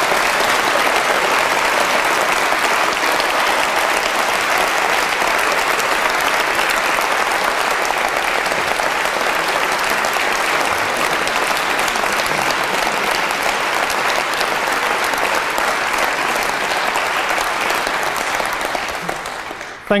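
Large audience applauding steadily, dying away near the end.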